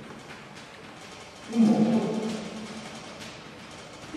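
A man's voice making a brief held hesitation sound on one steady pitch about one and a half seconds in, in a pause between sentences, fading slowly in a reverberant room.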